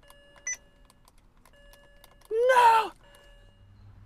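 A short electronic beep in the car cabin about half a second in, with faint steady tones sounding on and off. A little past halfway comes a brief, loud vocal sound about half a second long, like a short exclamation.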